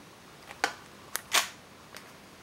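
Controls of a Nikon D7000 DSLR being operated by hand: a few sharp clicks over about a second, the last a slightly longer and louder clack.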